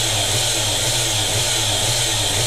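Homemade motor-generator rig running steadily: a constant low electric hum with an even whirring hiss over it.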